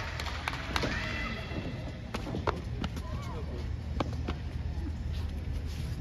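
A boy's hands and feet knocking on a wrestling ring's canvas-covered floor: a scattered series of sharp thumps, about eight over six seconds, over low crowd chatter.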